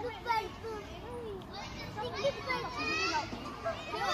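Several children's high voices calling out over one another at play, getting louder and busier in the second half.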